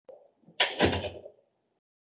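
A faint click, then a loud double knock about half a second in that dies away within a second.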